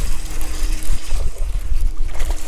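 Wind buffeting the microphone of a body-worn camera, a loud, uneven low rumble.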